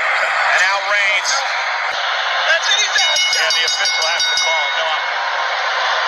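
Wrestling crowd noise: a steady din of many voices, with a few high steady tones about halfway through.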